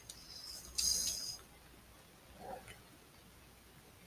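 Plastic parts of a transforming robot figure being handled: a brief high squeak with a short scrape in the first second and a half, then a faint click or rub about two and a half seconds in.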